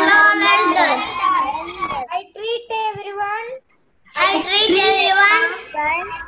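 A young boy's voice loudly chanting lines in a sing-song way, in three phrases with short breaks about two and four seconds in.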